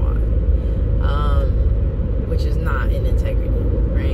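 Steady low rumble of a moving car, road and engine noise heard inside the cabin, with two brief vocal sounds about a second in and near three seconds.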